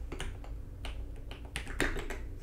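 About five scattered keystrokes on a computer keyboard, separate sharp clicks with the loudest near the end.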